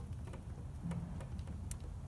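A few faint, light ticks over a low background as a spanner is held under heavy load on a seized EGR plate bolt.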